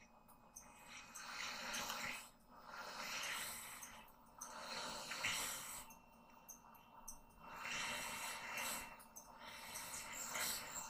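A man breathing through his nose close to the microphone: a breathy hiss about every two seconds, with short quiet gaps between.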